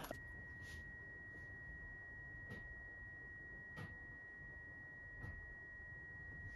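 A faint, steady, high-pitched electronic tone that holds one pitch, with a few faint clicks.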